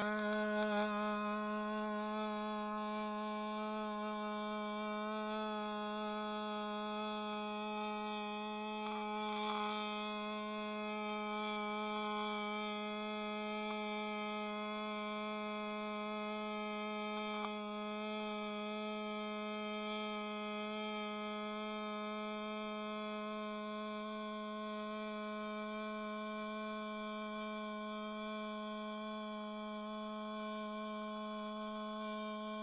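A man's voice holding one long sung note at a steady pitch, starting at once and kept going without a breath, slowly getting a little quieter: an attempt at holding a single note as long as possible.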